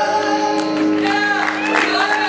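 Male gospel trio singing in close harmony with piano at the close of a song. A long held chord breaks off near the start, followed by short sliding vocal flourishes over the piano, with scattered applause coming in toward the end.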